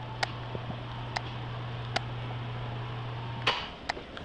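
A steady low hum that cuts off about three and a half seconds in, with sharp ticks about once a second from footsteps on a hard floor.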